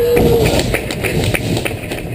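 Roller coaster riders clapping in a steady rhythm over a low rumble.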